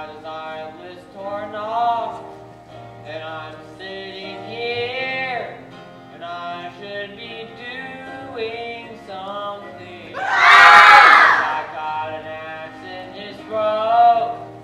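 Stage-musical singing by a young cast over an instrumental accompaniment. A loud burst of many voices comes about two-thirds of the way through.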